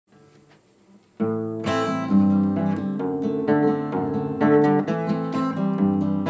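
Steel-string acoustic guitar strummed in a steady rhythm, starting about a second in. This is the song's instrumental opening, with no singing yet.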